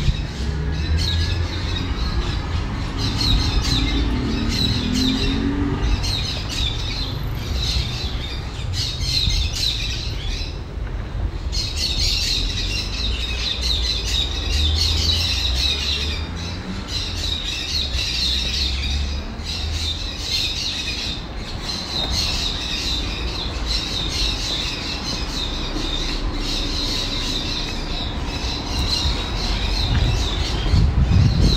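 Birds calling and squawking, a busy chatter of high calls that keeps up almost throughout and breaks off briefly about eleven seconds in, over a low rumble.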